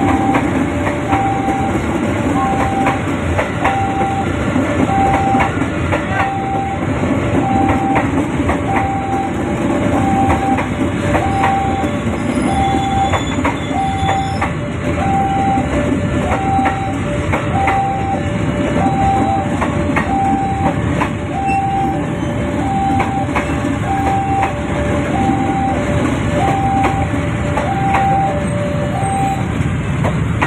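Electric commuter train passing close by, a steady rumble with wheels clicking over the rail joints. Over it a level-crossing warning bell rings a two-tone ding-dong, high then low, about once every second and a bit, and stops shortly before the end.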